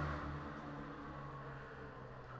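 Faint street traffic: a vehicle engine's low hum dies away in the first half second, leaving quiet, steady street background noise.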